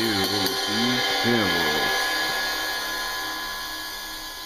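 22-inch Zildjian K Custom ride cymbal ringing out and slowly fading with no new strokes, its wash buzzing from a sizzle chain laid on the cymbal. A man's voice talks over the first two seconds.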